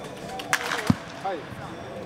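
A baseball bat strikes a tossed ball with a sharp crack about half a second in. A short, low thump follows a moment later, with voices in the background.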